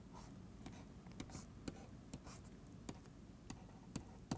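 Faint, irregular taps and clicks of a stylus on a pen tablet as lines are drawn, about one or two a second.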